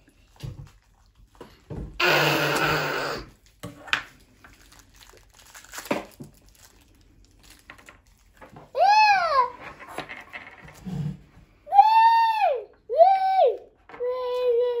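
A young child's high-pitched squeals: three short cries that rise and fall, in the second half. Earlier there is a rustling scrape lasting about a second and a few small clicks.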